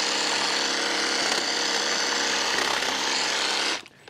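Toro hedge trimmer powered from a backpack battery, running steadily with its reciprocating blades cutting through shrub branches. It cuts off abruptly shortly before the end.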